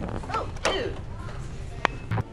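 Short, squeaky, creaking fart noises from a hand-held fart-sound toy, about half a second in and again faintly a little later, then a sharp click near the end.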